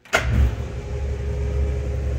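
Electric drive of a wheelchair platform lift starting up as its control button is pressed, then running with a steady low hum and a steady whine.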